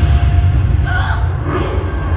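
Deep, steady cinematic rumble from a dramatic trailer-style soundtrack, with a breathy whoosh swelling about a second in.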